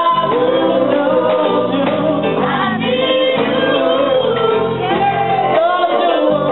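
Several voices singing a gospel worship chorus together over a live band playing a reggae beat, with electric guitar and drums.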